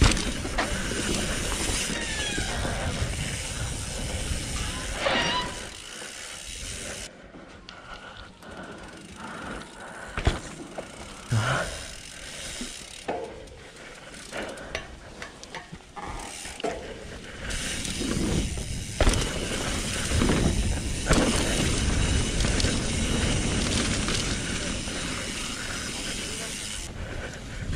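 Trek Remedy 8 full-suspension mountain bike ridden down a dirt trail: tyre noise and wind rush on the helmet camera, with scattered knocks and clicks from the bike over roots and bumps. The riding is loud for the first several seconds, eases to a quieter stretch of isolated clicks in the middle, and picks up again for the last several seconds.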